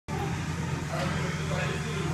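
A steady low mechanical hum, like an idling engine, with faint voices in the background.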